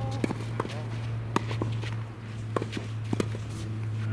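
Tennis balls being struck by rackets and bouncing on a clay court, heard as irregular sharp knocks, with shoes scuffing on the clay. A steady low hum runs underneath.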